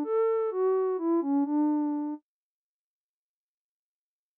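Synthesizer lead from the Vital software synth playing a short melody of about five notes, with a slow, subtle vibrato from a sine LFO on the oscillator's fine pitch. The phrase cuts off abruptly a little over two seconds in.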